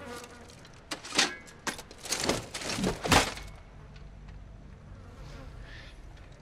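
Film soundtrack of a medieval battle scene: several short, sharp noises in the first three seconds, then a low, steady drone with a buzzing quality.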